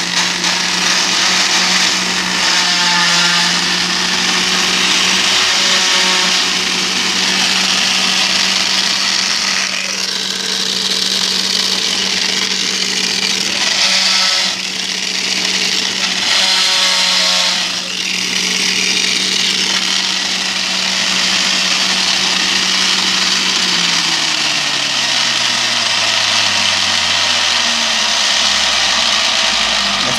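Centrifugal juicer motor running at a steady high whine with a dense grinding noise as grapes are shredded, louder in patches when fruit is pushed through. About 24 seconds in the motor slows, its pitch falling steadily as it spins down.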